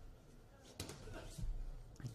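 Boxing gloves landing in a close exchange: a few sharp smacks about a second in, over faint boxing-hall ambience.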